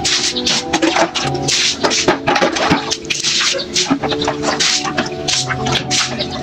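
Water splashing and pouring from a plastic dipper and basin, an irregular rush with many short splashes, over background music with held notes.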